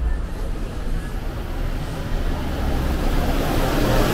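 Street traffic with a city bus passing close by: a low engine rumble and road noise that swell toward the end.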